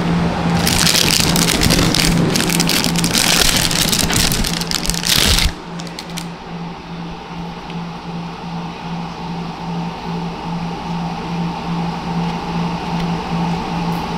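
A thin clear plastic bag crinkling and rustling as a sunglasses lens is unwrapped from it, loud for about five and a half seconds and then stopping abruptly. A low hum pulsing a couple of times a second carries on underneath.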